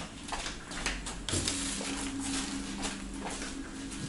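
Flip-flop footsteps slapping on a laminate floor as someone walks across a room. A steady low hum starts about a second in.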